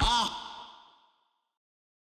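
The last note of the outro music ends with a short tail that wavers in pitch and fades out within the first second, followed by dead silence.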